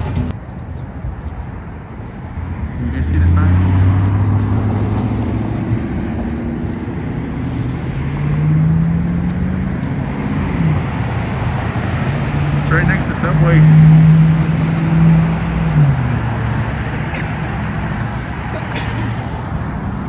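Road traffic: vehicle engines passing, each a hum that rises or falls in pitch and holds for a few seconds, the loudest about fourteen seconds in.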